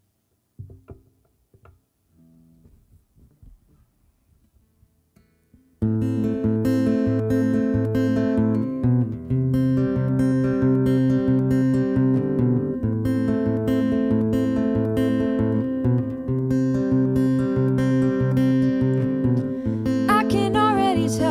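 After about six seconds of quiet with a few faint clicks, an acoustic guitar starts the song's intro, playing chords in a steady rhythm.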